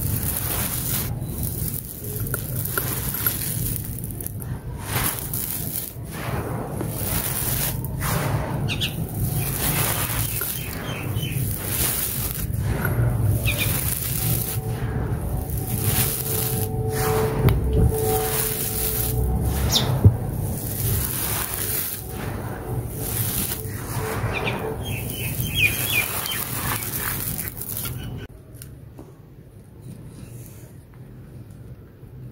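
Dry, gritty red dirt and small stones being scooped up and let fall through the hands: a continuous grainy pour with irregular sharper crunches. It drops much quieter about two seconds before the end.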